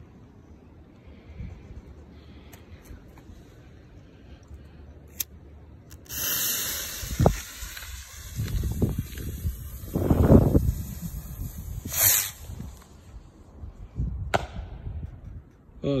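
Homemade bottle rocket firing: after a few quiet seconds its motor ignites with a sudden loud hiss about six seconds in and rushes up for several seconds, followed by sharp pops as its red star charge bursts.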